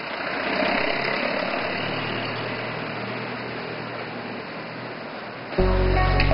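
Steady street ambience, an even hiss with a low rumble like distant traffic. Background music starts suddenly near the end.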